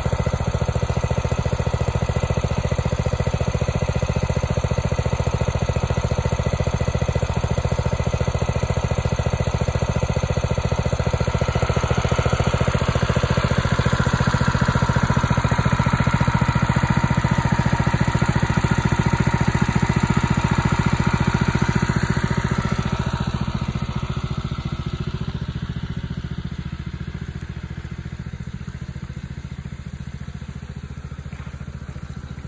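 Small engine-driven water pump running steadily, pulling pond water through the skimmer and hose. It grows fainter over the last several seconds.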